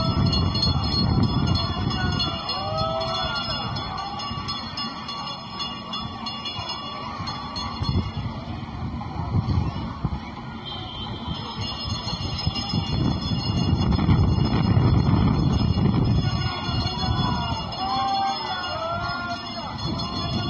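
Wind rumbling and buffeting on the phone's microphone, rising and falling in gusts, with short high rising-and-falling calls above it, mostly near the start and again near the end.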